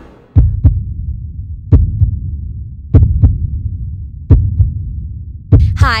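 Deep heartbeat-like double thumps in the backing music, a pair about every second and a quarter, over a steady low hum.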